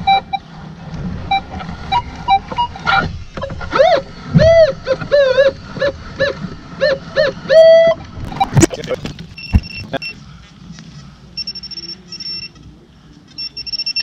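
Minelab Equinox metal detector giving short repeated target beeps, middling in pitch at first and then high-pitched beeps later on as the coil passes over a coin, read by the detectorist as a clad dime. In the middle comes a loud run of short, swooping, voice-like calls.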